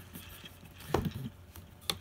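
Light handling noise of a LiPo battery being pushed and worked into a drone's snug plastic battery bay, with two short clicks, one about a second in and one near the end.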